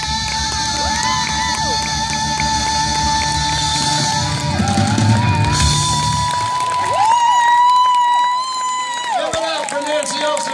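Live blues-rock band playing the closing bars of a song: drums and bass drop out about six seconds in, leaving a long held high note that bends up and down.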